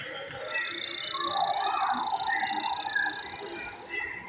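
Boxed toy ray gun playing its try-me sound effect: a warbling electronic tone with a steady high whine above it, lasting about three seconds.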